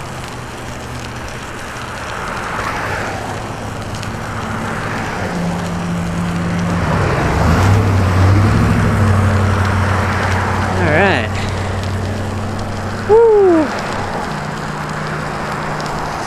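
Bicycle rolling on wet pavement on studded tires, a steady crackling tyre hiss with a low hum that shifts in pitch as speed changes, mixed with wind on the microphone. Near the end come two brief vocal sounds from the rider, the second the loudest thing heard.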